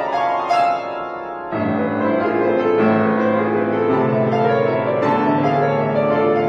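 Grand piano played solo in a tarantella. A brief softer passage gives way, about a second and a half in, to fuller, louder playing with strong bass notes.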